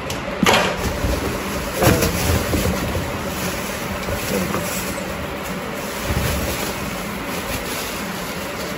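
Plastic bags and packets rustling and crinkling as they are handled and rummaged through, with two sharp knocks in the first two seconds.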